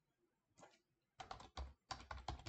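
Typing on a computer keyboard: a quick run of keystrokes starting a little over a second in, after a near-silent start.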